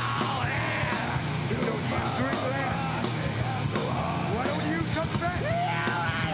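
Live rock band playing loudly: a drum kit and amplified instruments over a steady low bass, with sliding, wavering high notes on top.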